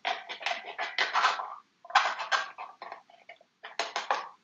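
A pen blade cutting and scraping into a dried wafer paper mache shell: scratchy cutting noise in several short bouts with brief pauses between them.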